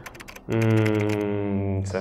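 A quick run of typewriter-style key clicks for about half a second, then a man's long, steady 'uhh' held at one pitch for more than a second.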